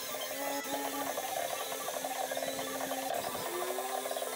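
Ryobi cordless drill running steadily, its twist bit boring a hole into a wooden board.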